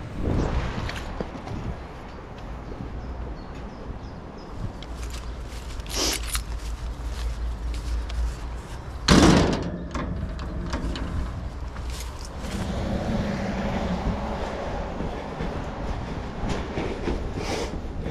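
A steel-mesh fence gate being handled, with a loud metallic clang about nine seconds in and a smaller knock about six seconds in. Footsteps and small clicks run over a steady low rumble.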